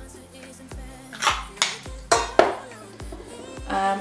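Background music with a steady beat, with a few sharp clicks or clatters a second or two in, as from a small cosmetic bottle being handled.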